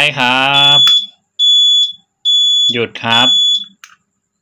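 Turn-signal warning beeper on a Keeway Superlight 200 motorcycle, sounding with a newly fitted flasher relay as the left indicator flashes. Four even, high-pitched beeps, a little over one a second, stop after the switch is pressed to cancel the signal.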